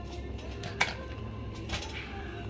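Wire shopping trolley being pushed across a tiled supermarket floor past chest freezers, over a steady low hum of store refrigeration, with a sharp clack a little under a second in and a softer one near the end.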